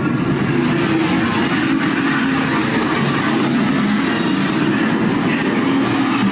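Train sound effect from the dark ride's onboard soundtrack: a continuous clatter of a running cartoon train.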